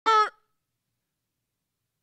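A man's brief, high-pitched shouted syllable into a handheld microphone, lasting about a third of a second at the very start.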